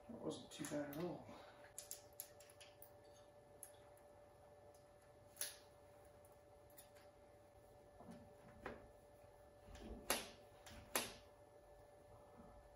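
Quiet hand work on a motorcycle's carburettor bank: a few faint clicks and knocks of parts being handled and fitted. The knocks come singly about five seconds in and twice close together near the end.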